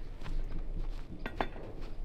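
A few light clicks and small knocks of equipment being handled at a mortar, between shots, over a low steady rumble.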